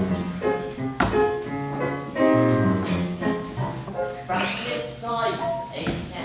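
Live musical-theatre song accompaniment, held instrumental notes with voices from the stage, and one sharp knock about a second in.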